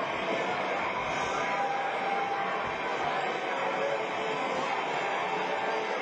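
Live rock band playing in a club, heard as a dense, steady wash of sound with voices mixed in.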